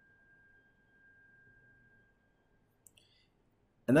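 Near silence of a pause in a screen-shared lecture, with a faint steady high tone that fades out about halfway and a single short click near the end.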